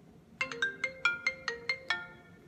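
Smartphone ringtone: a quick melody of about ten short, bright notes that starts about half a second in.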